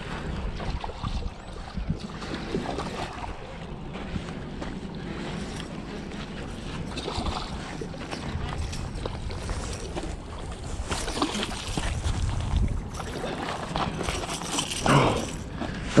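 Wind buffeting the microphone over water lapping at the shore, with light splashes as a hooked largemouth bass thrashes at the surface near the rocks.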